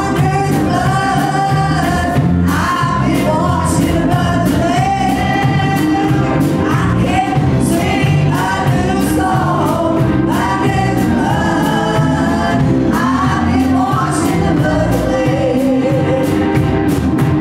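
A group of singers, mostly women, singing an upbeat gospel song together in church over live band accompaniment, with bass and a steady drum beat.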